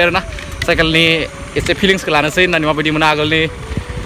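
A man talking in short phrases, with a steady low rumble underneath.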